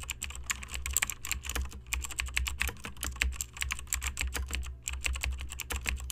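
Computer keyboard typing sound effect: a fast, uneven run of key clicks with a steady low hum beneath.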